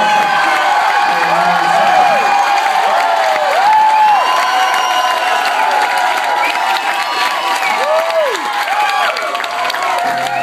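A small club audience cheering, whooping and clapping after a song, with many overlapping shouts and whistles rising and falling over the clapping.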